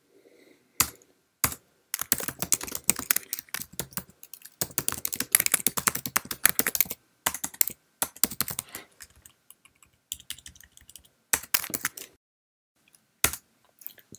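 Typing on a computer keyboard: runs of quick keystroke clicks with short pauses between them.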